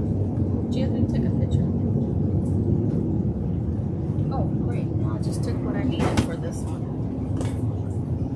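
Steady low rumble of greenhouse ventilation. Over it come light knocks and rustles as a woven twig basket is picked up and set down on a wooden board.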